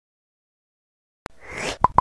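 Intro sound effect for an animated logo: a sharp click, a short rising whoosh, then two quick pops near the end.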